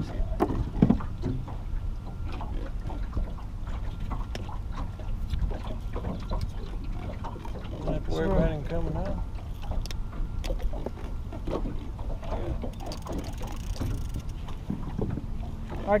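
Wind rumbling on the microphone and water lapping against an aluminum jon boat's hull, with scattered light knocks and handling noise as a catfish is unhooked on deck.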